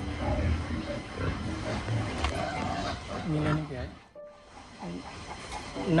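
Pigs grunting and squealing from pens, several short pitched calls over a steady low rumble, with a sudden brief drop almost to silence about four seconds in.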